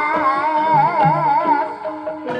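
Live Javanese kuda kepang (ebeg) dance music: a melody line with a wide vibrato over a repeating low beat from the accompanying ensemble.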